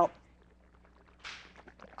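A spoken "Now," then faint sloshing of runny, freshly mixed clay and water in a glass jar: a short swish about a second in, followed by a few small clicks.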